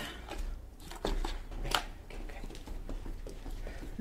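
Paper and cardboard takeout food packaging being handled and opened: irregular crinkles, rustles and light taps.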